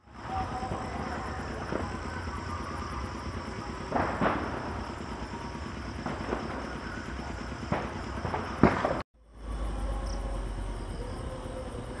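Outdoor night ambience: insects chirping in a fast, even high pulse over a low steady rumble, with a few brief knocks. The sound drops out for a moment about nine seconds in.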